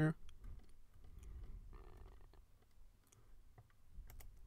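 Faint, scattered clicks of a computer mouse and the ticks of its scroll wheel.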